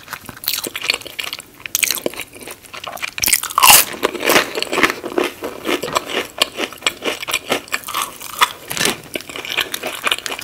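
Crunchy biting and chewing of a fried onion ring dipped in ketchup, close to the microphone: a quick, irregular run of crisp crunches, the loudest about three and a half seconds in.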